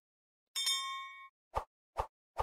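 Subscribe-animation sound effects: a bright bell-like ding that rings for under a second, then three short, soft pops in quick succession.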